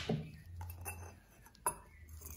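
Metal parts of a cut-open spin-on oil filter being handled: a soft scrape as the pleated cartridge slides in its steel canister, then one sharp metallic clink near the end.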